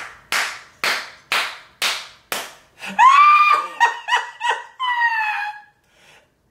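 Hands clapping slowly, about two claps a second, five times, then high-pitched laughter from about halfway in.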